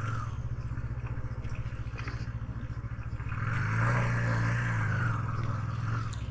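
KTM 250 Duke's single-cylinder four-stroke engine running at low speed with a steady pulsing note, opened up briefly from about three and a half seconds in before easing off again near five and a half seconds.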